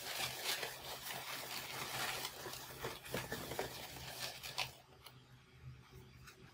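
Latex twisting balloons rubbing against each other and against hands as a bunch of them is handled, a dense rustling scrape that dies away near the end.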